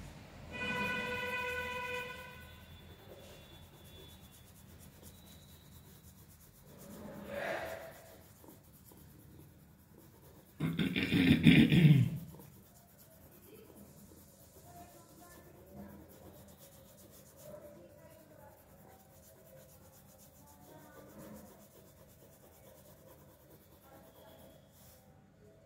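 Pencil lead scratching on paper in quick shading strokes. Near the start a steady pitched tone sounds for about two seconds, and about eleven seconds in a loud burst of noise lasts about a second.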